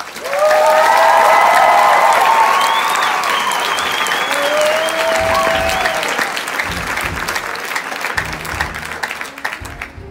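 Theatre audience applauding and cheering with whoops. It breaks out suddenly and eases off near the end.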